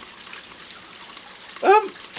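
Faint steady hiss with light crackling from potassium permanganate and glycerol reacting and smoking in a cardboard tube. A man says a brief 'um' near the end.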